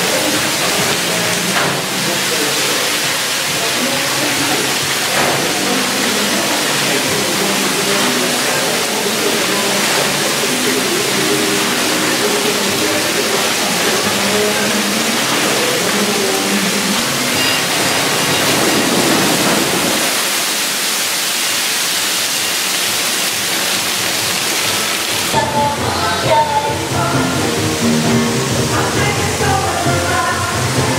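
Outdoor theme-park ambience: background music over a steady rushing hiss, with faint voices. About five seconds before the end the hiss thins and the music comes through more clearly.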